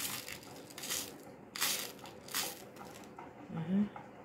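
Seed beads shifting and rattling in a plastic tub as a beading needle is scooped through them to pick beads up, in several short bursts.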